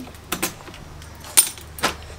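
A key and the lock and lever handle of a patio door being worked by hand: three short sharp metallic clicks, the loudest about one and a half seconds in.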